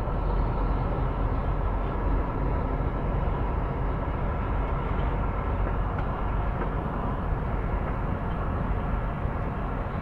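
Steady low rumble of a semi truck's diesel engine and rolling noise, heard from inside the cab as the truck drives across an unpaved yard.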